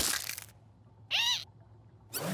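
Cartoon sound effects: a sharp stomp with a short crunch as a foot comes down on bread crumbs. About a second later comes a short, high whine that rises and falls, a nervous whimper.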